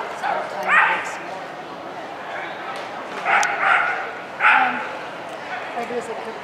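Dog barking in short, high yips, about four times: once about a second in, then three in quick succession between three and five seconds.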